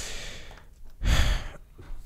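A man breathing out audibly close to a microphone: two breathy sighs, the second, about a second in, louder.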